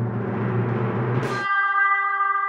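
Drum roll building to a cymbal crash about one and a half seconds in, then a bright held musical note: a reveal sting.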